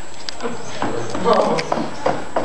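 Irregular knocks and thuds of feet climbing up onto stacks of padded chairs.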